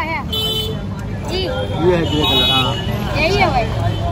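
Busy street-market noise: people talking close by over a low, steady traffic rumble. Two short vehicle-horn toots sound, one near the start and one about halfway through.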